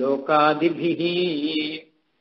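A man's voice chanting a line of verse in a recitation tone, holding parts of it on a steady pitch. It stops a little before the end.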